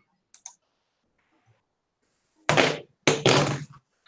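Two faint clicks, then two loud rustling bursts of about half a second each: handling noise from a wired earphone headset's inline microphone being touched and moved.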